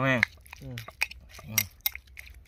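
Metal spoon clinking against a ceramic bowl as a chunky dipping sauce is stirred, with a couple of sharp clinks about a second in and near the end.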